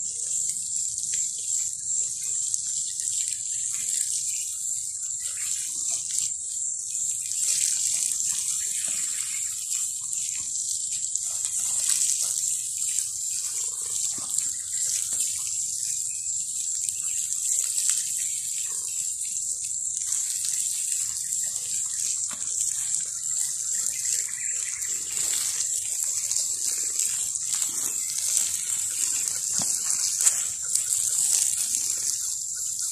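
Water pouring in a stream from a plastic watering can's spout and splashing onto mulched soil, a steady hiss throughout.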